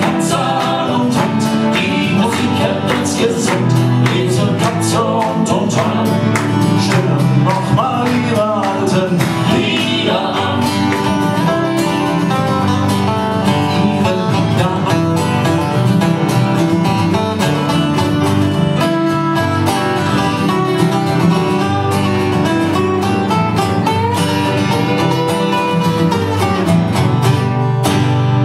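Live acoustic guitars playing an upbeat folk song, strummed in a steady rhythm with picked melody lines over it.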